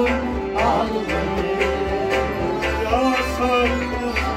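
Live Kashmiri Sufi music. A harmonium holds sustained notes under a wavering melody line, with a bowed string instrument and drum strokes about twice a second.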